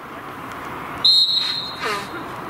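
Referee's whistle: one short, high blast about a second in, trailing off, likely blown to let the free kick be taken. A short shout follows near the end.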